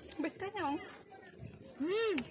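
A girl's voice making two drawn-out sounds without clear words: a swooping call early on and a rising-then-falling one near the end.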